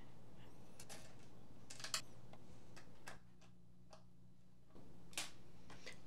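A handful of scattered light clicks and knocks from hands working on a 3D printer's frame and bed while fitting screws, over a faint steady hum.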